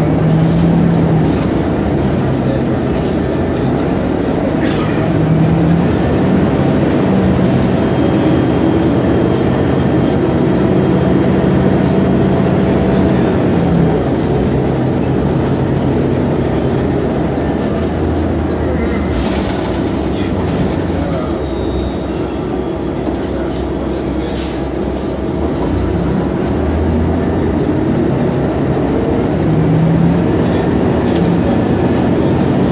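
Cabin sound of a 2002 New Flyer D40LF diesel transit bus under way: the Detroit Diesel Series 50 engine and Allison B400R automatic transmission drone steadily, the pitch stepping up and down as the bus speeds up and slows. A couple of brief knocks or rattles come about two-thirds of the way through.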